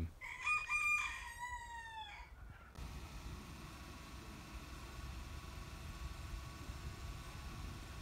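A rooster crowing once: a call of about two seconds that holds its pitch and then falls away at the end. After it only a faint, steady low background remains.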